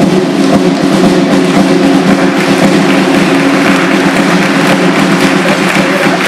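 Military brass band playing a march, with drums striking in rhythm over sustained low brass notes.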